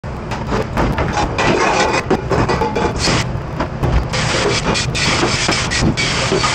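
Stainless steel pans and inserts clattering in a restaurant dish pit, many sharp clanks over a steady low rumble. From about four seconds in, a pre-rinse sprayer hisses as water hits the metal.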